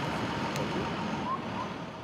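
Road traffic noise: a steady hum of vehicles on a city street, easing off slightly near the end.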